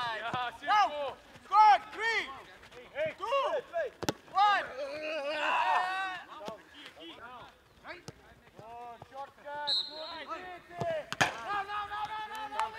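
Players' short shouts and calls across a football training pitch, several voices overlapping about five seconds in. There are sharp thuds of a football being struck, one about four seconds in and another near eleven seconds.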